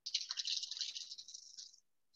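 Brief hissing, rustling noise on a remote caller's video-call audio line as the microphone opens, starting suddenly and fading out before two seconds have passed.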